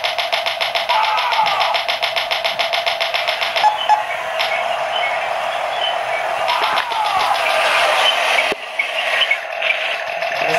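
Radio-controlled toy battle tanks' built-in electronic sound effects from their small speakers: a rapid even rattle of about ten beats a second, like gunfire, for the first three and a half seconds and again briefly around seven seconds, over a continuous engine-like drone.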